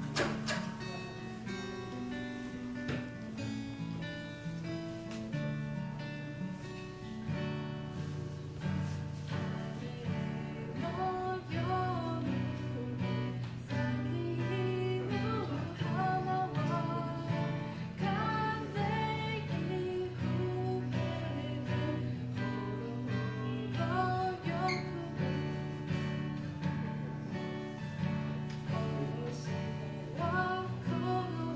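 Acoustic guitar playing chords to accompany a young woman's singing voice, which comes in after about ten seconds and carries the melody over the guitar.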